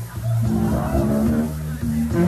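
Live band heard from the audience: electric bass and guitar holding sustained notes, with a voice over the band.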